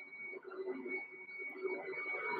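Faint background noise in a room, with a thin, steady high-pitched tone running through it.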